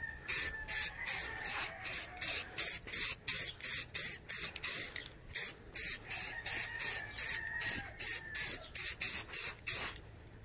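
Aerosol spray-paint can of Rust-Oleum satin black paint and primer, sprayed in quick short bursts of hiss, about three a second, laying even coats on an intake manifold.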